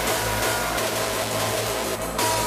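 Hardcore techno from a DJ mix: a distorted kick drum beating about three times a second under a dense, noisy synth with a sustained lead tone that glides in pitch. The beat drops out briefly right at the end.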